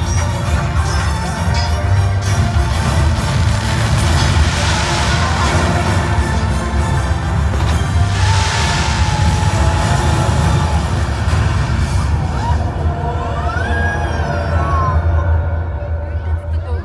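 Loud show soundtrack music from the park's loudspeakers, with fireworks going off over it; the fireworks show as two hissing surges about four and eight seconds in.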